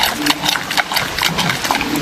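Giant panda chewing and crunching food close up: rapid wet crunches and mouth smacks, several a second.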